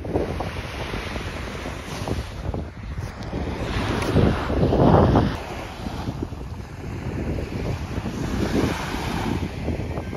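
Small waves washing onto a sandy beach, with wind rumbling on the microphone. The wash swells louder about four to five seconds in.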